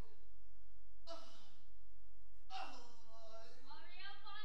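An actor's wordless vocal cries: a short breathy sigh with falling pitch about a second in, then a longer drawn-out cry that drops and climbs again and is held near the end.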